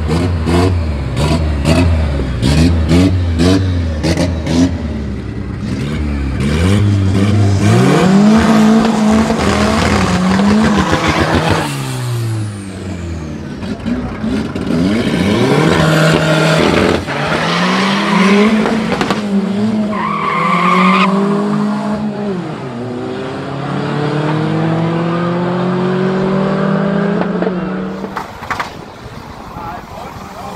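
Drag-race cars' engines revving hard, with a rapid run of sharp pops over the engine note in the first few seconds. Then come repeated rising revs with short drops between them as the cars launch and accelerate away through the gears.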